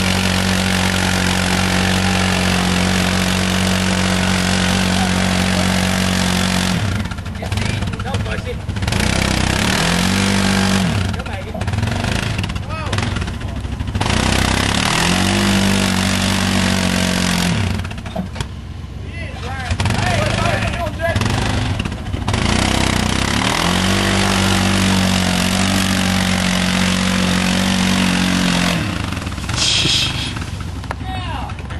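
Yamaha Rhino side-by-side's engine revving hard under load as it claws up a muddy ravine. The revs are held high for several seconds, then drop and surge again in repeated bursts as the wheels lose and regain grip.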